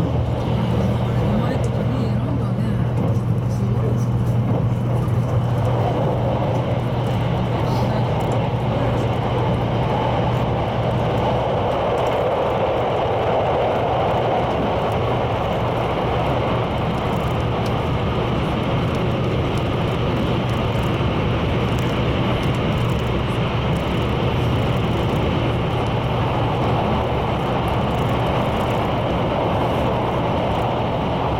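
JR West 681 series electric train running at speed through a tunnel, heard from inside a passenger car: a steady, dense rumble of wheels on rail with a constant low hum beneath it.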